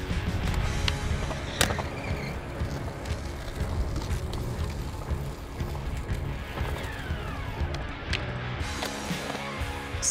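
Background music over a skateboard's wheels rolling on concrete ramps, with a few sharp clacks of the board, the loudest about one and a half seconds in.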